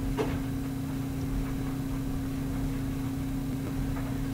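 A steady low electrical hum with a faint hiss, and a single soft click shortly after the start.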